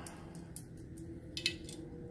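A few light metallic clicks and clinks of a bolt and washers being handled by hand on a milling machine table clamp, three of them close together near the middle, over a faint steady hum.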